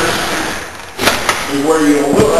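A voice talking, with two sharp clicks about a second in.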